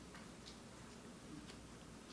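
Near silence: room tone with two faint ticks about a second apart.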